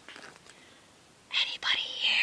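A woman whispering a line of a read-aloud story, starting about a second and a half in.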